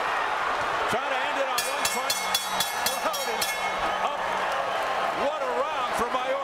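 Arena crowd noise with shouting voices. About a second and a half in comes a rapid series of ringing metallic strikes lasting about two seconds: the ring bell ending the round.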